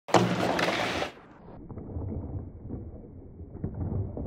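Indoor ice rink ambience: a low, steady rumble with a few faint knocks, typical of sticks and pucks on the ice. It follows a loud rush of noise that cuts off about a second in.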